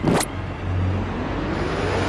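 Intro music sound effect: a short swoosh hit, then a synthesized tone gliding steadily upward in pitch over a low bass.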